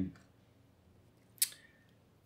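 A single sharp click about one and a half seconds in, from small hard pieces being handled, with a brief faint ring after it.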